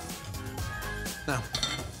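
A few light clinks of a stainless wire-mesh sieve of fried mince against a ceramic bowl as it is set down to drain, over soft background music.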